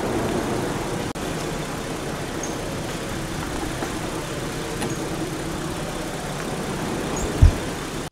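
Steady crackling rush of a lava flow burning its way into a car, with one short low thump near the end.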